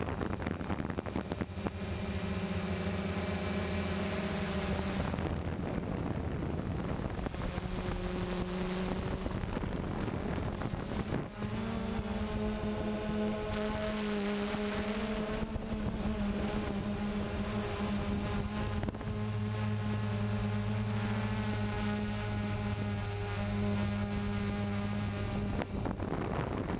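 DJI Phantom quadcopter's propellers whirring steadily, the hum changing pitch in steps as the motors speed up and slow down to manoeuvre.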